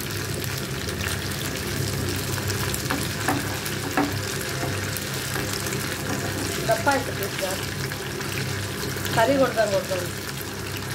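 Rohu fish steaks sizzling steadily as they shallow-fry in hot oil in a pan. A fork now and then clicks against the pan as the pieces are moved.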